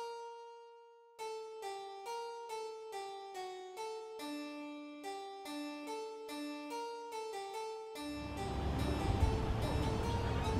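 Solo harpsichord music, a melody of plucked single notes. About eight seconds in, the loud, steady rushing noise of a Navy LCAC hovercraft comes in, heavy in the low end and like an overblown vacuum cleaner, with the music faintly under it.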